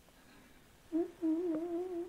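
A person humming a short, slightly wavering note over a telephone line, starting about a second in after near silence.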